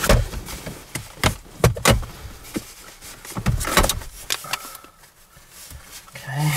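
Overhead plastic interior trim of a car being pried and pulled loose from its clips by hand: a series of sharp clicks, snaps and knocks, several in the first two seconds and another cluster in the middle.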